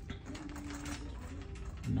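Plastic shopping cart being pushed along a store aisle, its basket and wheels rattling and clicking in a quick irregular patter over a low background hum.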